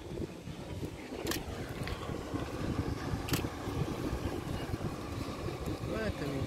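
A vehicle engine running with a steady low rumble. Two short sharp clicks come about a second and three seconds in.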